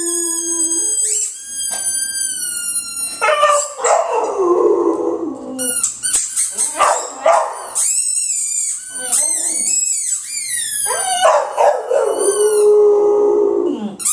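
American bulldog howling: long drawn-out notes that fall in pitch, broken into shorter calls in the middle and rising into another long howl near the end.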